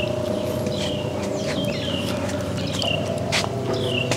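Birds chirping, short falling notes repeated every second or so, over a steady low hum.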